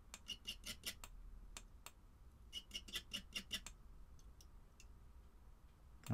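Light metallic ticks as a steel coil tool is strummed across the wraps of a glowing rebuilt coil while it is fired to clear hot spots. The ticks come in two quick runs, one at the start and one from about two and a half seconds in, with a few stray ticks after.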